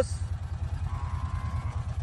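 Utility vehicle's engine running at low revs, a steady, evenly pulsing low rumble.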